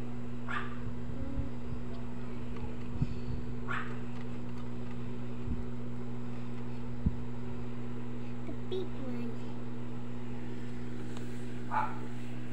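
A steady low electrical hum, with a few brief faint voice sounds and a sharp click about seven seconds in.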